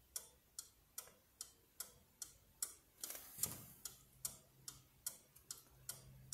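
Bentele pendulum night clock ticking faintly and evenly, about two and a half ticks a second. A brief soft noise comes about halfway through.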